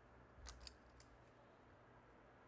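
Faint paper handling: a few short, crisp rustles and ticks as a paper cutout is set down and pressed onto the collage, about half a second to a second in, then near silence.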